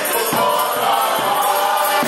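Accordion playing a Ukrainian wedding table song while a man sings and others join in, with a tambourine keeping a steady beat.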